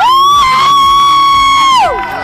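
A girl's long, high-pitched scream of excitement: it shoots up in pitch, holds steady for about a second and a half, then falls away near the end, with other screaming voices around it.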